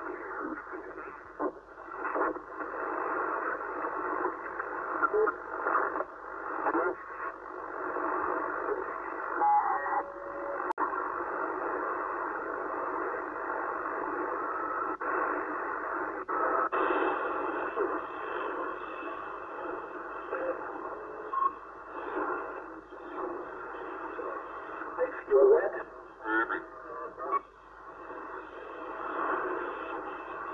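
Yaesu transceiver's speaker receiving the 27 MHz CB band as it is tuned across frequencies: narrow, tinny hiss and static with distorted voices of distant stations coming and going. The band is open with strong long-distance propagation.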